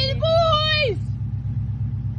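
A person's high-pitched shout, held for about a second and dropping off at the end, over the steady low rumble of the Subaru Legacy's EJ207 flat-four engine.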